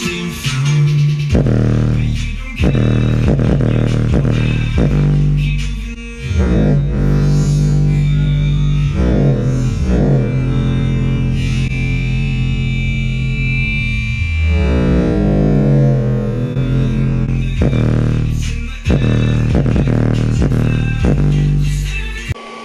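Bass-heavy music played loud through a 4-inch mini subwoofer in an MDF box, its low notes held for a few seconds at a time with brief drops in level, as the small driver is pushed hard on power.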